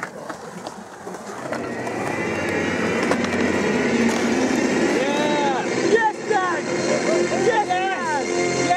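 Several people shouting and calling out in the open, with short calls that rise and fall in pitch in the second half, over a steady background noise that builds after the first second.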